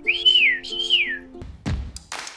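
A cartoon bird's whistled call: two notes, each rising, holding briefly and then gliding down, over a simple background tune. A thump comes near the end.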